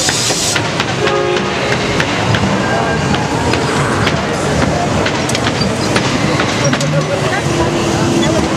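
Loud, steady din of a crowded display of animated Halloween props: voices mixed with music and prop sound effects. A short burst of hiss comes right at the start.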